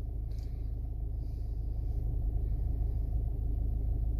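A car's engine idling, heard as a steady low rumble inside the cabin.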